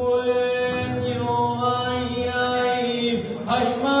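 A lone male voice singing unaccompanied through a microphone. It holds one long, slowly ornamented line, breaks off briefly about three seconds in, and starts a new, higher phrase near the end, in the manner of an Andalusian saeta.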